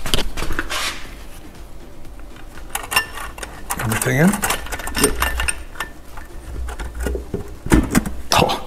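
Scattered metal clinks and knocks as an aluminium Subaru EJ253 cylinder head is handled and set down onto the engine block over its multi-layer steel head gasket, with a louder cluster of clicks near the end as it seats.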